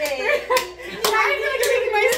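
Several people clapping their hands in a steady rhythm, about two claps a second, under adult voices.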